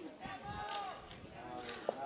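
Faint, distant shouts of players calling out on a football pitch, carried over low outdoor ambience.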